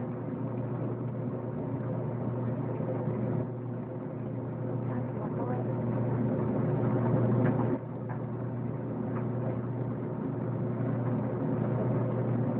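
A steady low machine hum with a few faint clicks and rustles over it.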